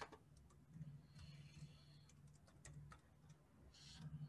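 Faint, irregular clicks of computer keyboard typing over a low background hum.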